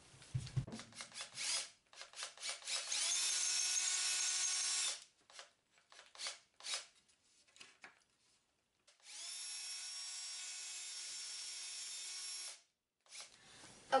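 Cordless drill boring a hole through two stacked wooden boards: a steady whine of about two seconds, then a second, quieter run of about three and a half seconds at the same pitch. Knocks and clicks of the wood and drill being handled come before and between the runs.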